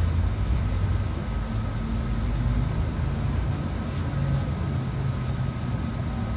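City bus heard from inside the passenger cabin: a steady low engine and road rumble as it drives, with a thin steady whine above it.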